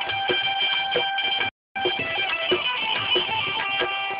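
Instrumental Gujarati folk music with a plucked-string melody over drum strokes. The sound cuts out completely for a moment about one and a half seconds in, then comes straight back.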